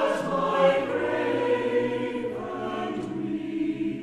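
A choir singing slow, sustained chords.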